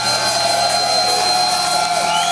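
Amplified electric guitars sustaining a held, ringing note through the PA with no drumbeat: a steady high whine over a lower tone that sags slightly, with crowd noise beneath.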